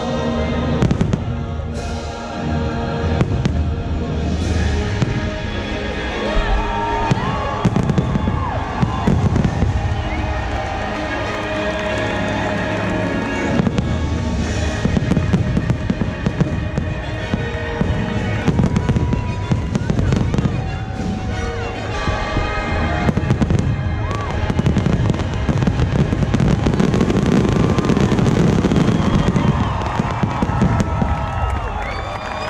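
Aerial fireworks display, many shells bursting in quick succession over the show's loud music soundtrack with voices, growing louder near the end.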